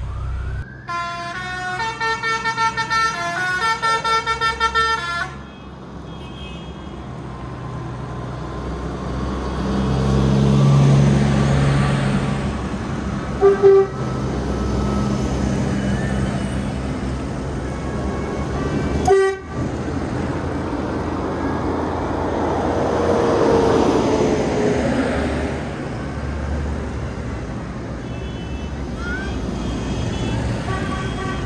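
A short series of stepped electronic tones, then tractors driving past one after another on a wet road: engines running and tyres hissing, swelling as each goes by and fading. There are two short horn toots near the middle.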